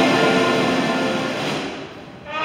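Brass music holding a sustained chord that fades away near the end, the close of a phrase before the next one begins.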